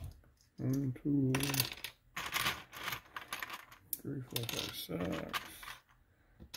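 Small plastic Lego bricks clattering and clicking against each other as a hand rummages through a loose pile and parts bins, in several bursts. A short low mumble of voice comes about a second in.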